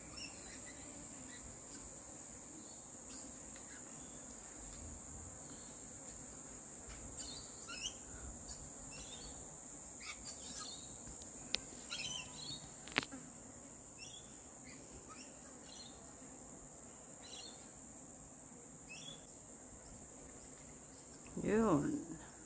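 A steady, high-pitched insect drone with scattered short bird chirps, busiest in the middle; two sharp clicks about halfway through, and a wavering voice-like sound just before the end.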